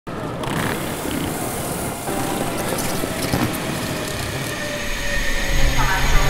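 Steady, even rushing background noise with no clear tone, growing louder near the end.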